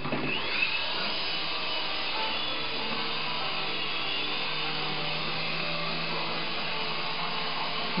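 Syma S107G mini remote-control helicopter's small electric motors and coaxial rotors spinning up with a rising whine at takeoff, then whirring steadily in flight.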